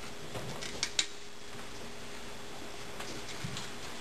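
Meeting-room background noise with a faint steady hum. Two sharp clicks come close together about a second in, and a few fainter ticks come later.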